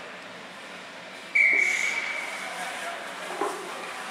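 A hockey referee's whistle blown once about a second in: a sudden high, shrill blast held for about a second, then fading. Voices murmur underneath.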